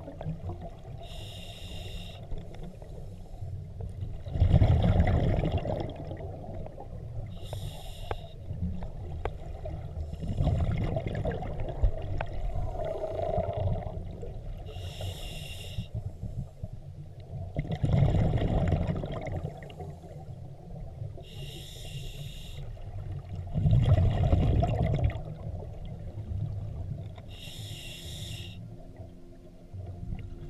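A scuba diver breathing through a regulator underwater: a short hiss of inhalation, then a few seconds later a louder low rumble of exhaled bubbles, the cycle repeating about every six to seven seconds.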